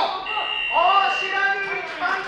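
Electronic timer buzzer sounding one steady, flat tone for about a second, the signal that the bout's time is up, with a man's voice talking over it.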